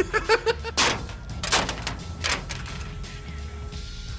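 Handfuls of dry dog and cat food kibble thrown against a van's body, pelting it in three rattling hits roughly a second apart. It is a test for a meteor-shower sound effect.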